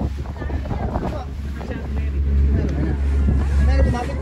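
Wind buffeting the microphone on a boat's deck, a steady low rumble that grows louder about halfway through.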